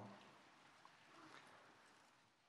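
Near silence: faint room tone in a large hall.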